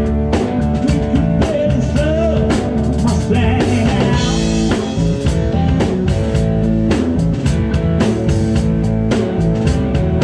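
Live rock band playing: electric guitars over a drum kit keeping a steady beat, with a bending guitar note about two seconds in.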